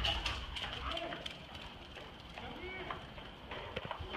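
A dog's paws tapping faintly on concrete as it runs down steps and across pavement, with a faint voice in the background.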